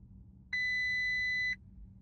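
A 2017 Audi A4 Allroad's instrument cluster gives one steady warning beep, about a second long, starting about half a second in. It comes as the loss-of-pressure warning from the tire pressure monitoring system appears.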